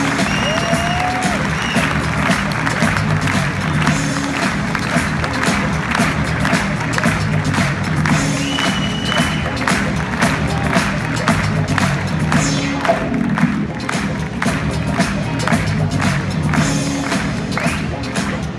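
Audience applauding over loud music with a steady bass line.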